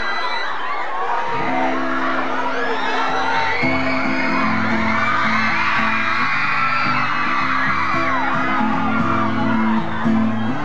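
Acoustic guitar starting a song's intro with held, changing chords about a second and a half in, under a crowd of fans screaming and cheering throughout.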